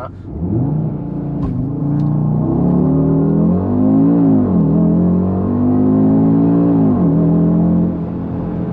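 Audi RS Q3's turbocharged 2.5-litre five-cylinder engine at full throttle from a standing launch, heard inside the cabin, rising in pitch and dropping at each of three quick upshifts. The launch bogs down, the engine seeming to cut out at the start.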